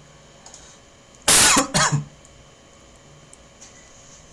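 A man coughing twice in quick succession, a little over a second in; the first cough is the longer and louder.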